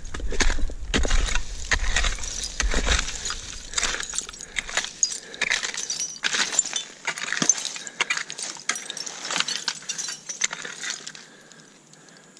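A rake scraping and dragging through dump soil thick with rocks and broken glass, with many irregular small clinks and rattles. The sound tapers off near the end.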